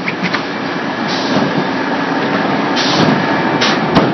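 An in-line extrusion and thermoforming machine for polypropylene flowerpots running steadily. Short bursts of hiss come about a second in, near three seconds and again just after, and a few sharp clicks come near the start and at the very end.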